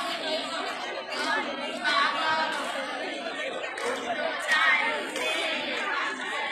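Crowd chatter: many people talking at once, no single voice standing out.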